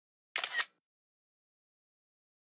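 iPad screenshot shutter sound: the simulated camera-shutter click, heard as two quick clicks close together lasting under half a second.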